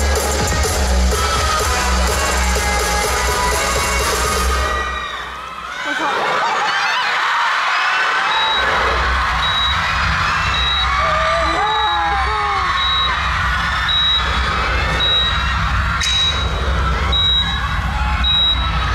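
Live pop music with heavy bass, played loud through a concert hall's sound system, cuts out about five seconds in. A crowd of fans then screams and cheers over a low bass rumble, with a short high beep repeating steadily.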